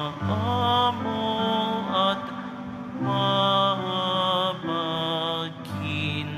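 Slow, sustained Communion music at Mass: long held notes, with a wavering melody that moves every second or so over steady low notes.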